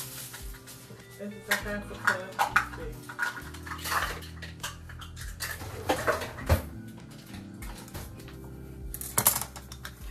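Kitchen clatter: dishes, utensils and packages knocked and set down on a counter as things are gathered, in a series of scattered clicks and knocks, over a steady low hum.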